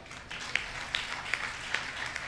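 Faint, sparse hand claps, a few evenly spaced claps about two or three a second.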